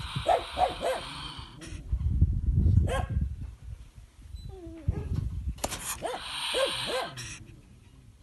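Trapped wild polecat hissing and giving short, sharp defensive calls in two bouts, right at the start and again about six seconds in. A low rumble and a few sharp knocks fill the gap between them.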